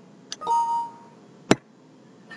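A soft click, then a short electronic chime from the computer, one steady tone that sounds for about half a second and fades. About a second later comes a single sharp click, the loudest sound.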